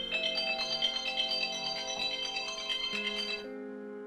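A smartphone ringtone for an incoming call, a quick run of bright high notes lasting about three and a half seconds before it cuts off, over soft background music.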